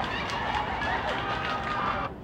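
Steady outdoor background noise, an even hiss-like ambience with faint distant voices in it, which cuts off abruptly at the end.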